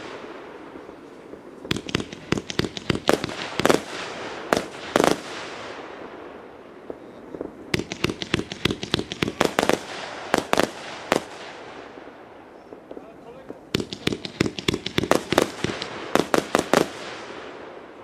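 A Kometa Monte Cadria 49-shot, 1.2-inch firework cake firing. It goes off in three volleys of rapid sharp bangs, each lasting about three seconds, with quieter spells between them.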